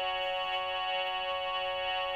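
Sampled harmonium sound from a mobile harmonium app, coming through the phone's speaker: a chord of several notes held steady.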